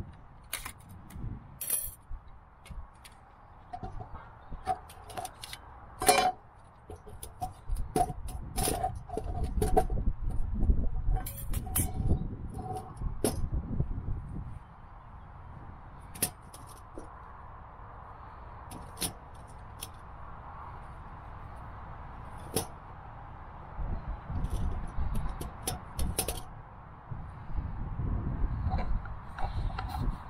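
Scattered metallic clicks and clinks of thin stainless-steel stove panels being handled and slotted together into a flat-pack camping firebox, with wooden log quarters knocked into place inside it, over a low rumble.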